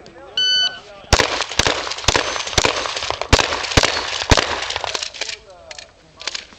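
An electronic shot timer gives one short start beep. Then a run of about seven gunshots follows in quick succession, roughly two a second, with a few fainter shots after them.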